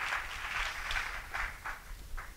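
Soft footsteps of a man in leather shoes walking across a wooden stage floor, a few faint steps heard against the quiet of a large hall.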